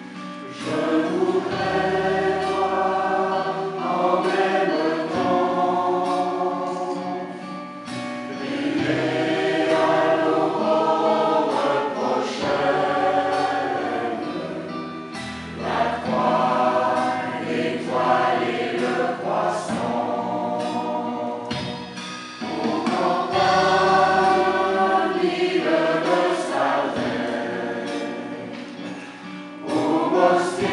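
Mixed choir of women and men singing a song in parts. The phrases last a few seconds each, with short breaks about 8, 15 and 22 seconds in.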